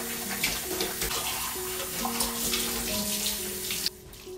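Cold tap water running from a kitchen faucet into a stainless steel sink as dishes are rinsed by hand, with light clinks of crockery. The water sound cuts off suddenly just before the end.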